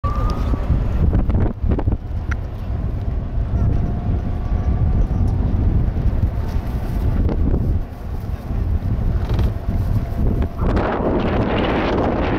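Wind buffeting the microphone of a camera riding on a moving vehicle: a steady low rumble that swells into a louder rushing hiss near the end.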